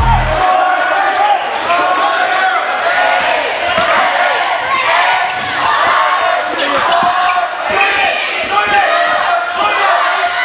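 Live basketball game sound in a gymnasium: a basketball bouncing on the hardwood court amid many overlapping voices of players and crowd, after music cuts out about half a second in.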